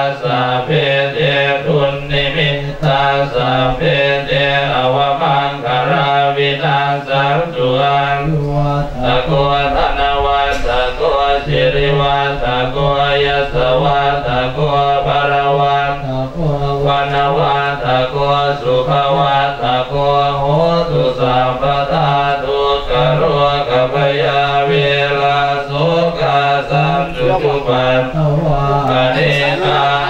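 Several Buddhist monks chanting Pali blessing verses in unison into microphones: a steady, near-monotone group recitation that runs on without pause.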